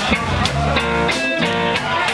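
Live blues band playing in a pause between sung lines: electric guitar over bass, drums and organ chords, with a steady beat.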